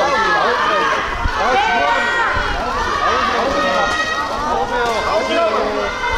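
A crowd of fans calling and shouting over one another, many high-pitched voices overlapping without a break.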